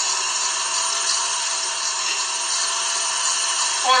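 Electric stand mixer running steadily, its wire whisk beating egg whites and sugar in a steel bowl as the meringue is whipped to stiff peaks.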